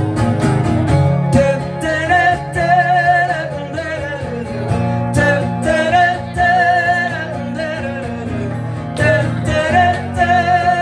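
A woman singing live into a microphone while strumming an acoustic guitar, holding long notes with a wavering vibrato over steady strums.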